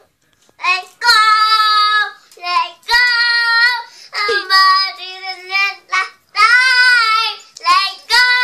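A young girl singing loudly with no accompaniment, in four or so phrases of long held notes with short breaks between them.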